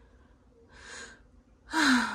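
A woman's breathing: a faint breath about halfway through, then a loud breathy vocal sound near the end that falls in pitch, like a gasp or sigh.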